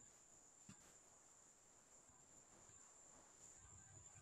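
Near silence, with a faint, steady, high-pitched trill of crickets.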